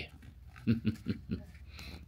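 A man chuckling: a short run of about four low, breathy laughs in quick succession.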